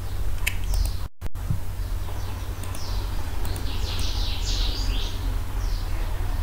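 Small birds chirping repeatedly in the background, with a burst of quick high chirps in the second half, over a steady low hum. The sound cuts out completely for a moment about a second in.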